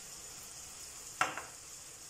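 Onion, tomato and spice curry base sizzling quietly in a stainless steel frying pan on low heat, with one short, sharper sound about a second in.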